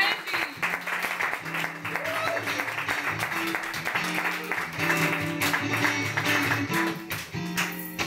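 Electric guitar played live, strumming chords in a quick, steady run of strokes with held notes between them.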